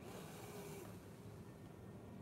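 Faint breath of air through a ventilator's nasal mask: a soft hiss of airflow in the first second, then quieter.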